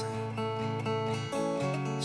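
Acoustic guitar played gently, sustained chords ringing, moving to a new chord a little past halfway.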